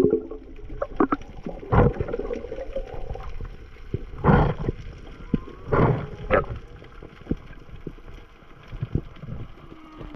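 Underwater sound heard through a diving camera's housing: a muffled water background with scattered sharp clicks and three short, louder rushing swooshes about two, four and a half and six seconds in.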